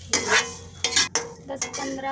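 Steel spatula scraping and clinking against a steel kadhai as roasted broken wheat (daliya) is scooped out onto a steel plate, with several sharp metal clinks. The grains are fully roasted.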